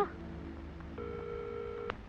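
Telephone ringback tone: one steady electronic tone lasting about a second, starting about a second in and cut off with a click as the call is answered.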